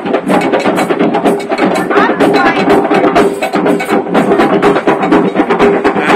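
Live band music with fast, steady drumming and hand percussion, loud and continuous, with crowd voices mixed in.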